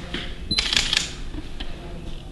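About half a second in, a brief high tone and then about half a second of rattling clicks and hiss, typical of a handheld camera being handled. Faint knocks of footsteps on wooden floorboards run underneath.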